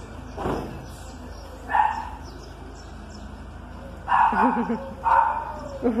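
A dog barking in short bursts: once about two seconds in, then several barks close together in the last two seconds.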